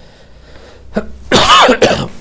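A man coughs, one loud, short cough about a second and a half in.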